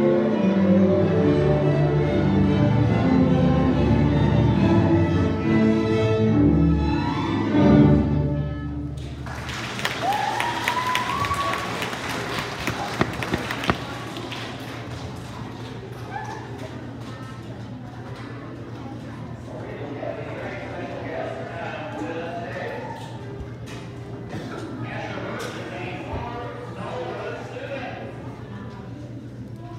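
A string orchestra of violins, cellos and double basses plays the last bars of a piece, ending on a final chord about eight seconds in. Several seconds of clapping and a cheer follow, then a low murmur of children's chatter.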